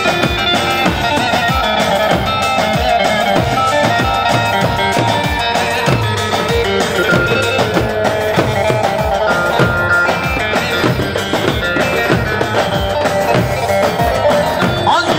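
Live wedding band playing an instrumental Turkish folk dance tune, with a steady drum beat under a melodic lead line.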